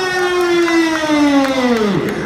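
A man's voice holding one long drawn-out note, the kabaddi commentator's sung-out call. Its pitch sinks slowly and then drops sharply at the end.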